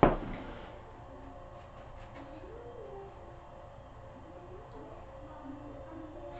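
Metal dumbbells set down on the floor with one loud clank at the very start that rings briefly, followed by only faint background sound.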